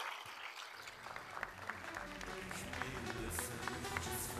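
Audience applause dying away as electronic music comes in about a second in and carries on under it.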